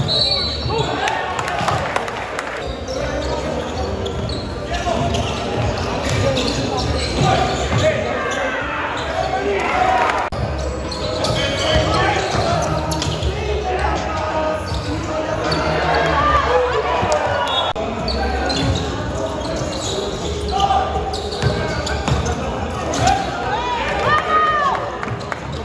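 Live basketball game sound in a large indoor gym: a basketball bouncing on the hardwood court as players dribble, with indistinct shouting voices from players and the bench.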